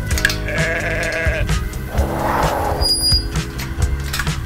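Background music with a steady beat, over which a farm animal bleats once from about half a second in, lasting about a second. A brief noisy sound follows about two seconds in.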